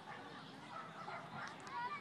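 Faint, repeated bird calls, several overlapping, with a louder call near the end.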